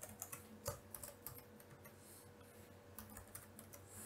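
Faint typing on a computer keyboard: a scattered run of light key clicks, busiest in the first second and again near the end.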